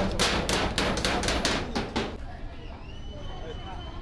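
Hammer blows on a metal door frame, quick and regular at about four a second, stopping about two seconds in.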